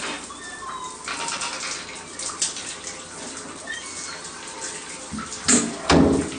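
Shower water running and splashing, with a louder burst of sound about five and a half seconds in.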